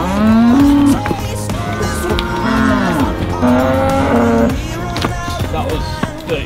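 Dairy heifers mooing several times: long, drawn-out calls, the first rising in pitch, over background music.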